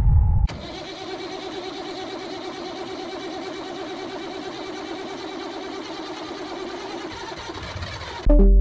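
A loud low rumble cuts off half a second in. It gives way to an old desktop PC powering up and booting, its cooling fans and drives whirring in a steady hum.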